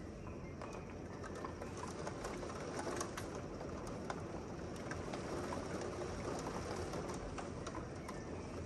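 Steady rain falling, with many quick sharp taps of drops striking the window glass and nearby surfaces.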